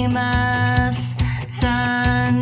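Pop-rock song: a singer holds a sung note over steady drums, bass and guitar. The voice drops out about a second in and comes back shortly before the end.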